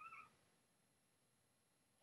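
A house cat gives one short, faint meow that rises in pitch, right at the start. Near silence follows.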